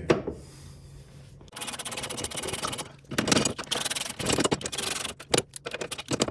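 Irregular rubbing and scraping, starting about a second and a half in, as hands work against the rusty metal around a car's rear gearbox mount.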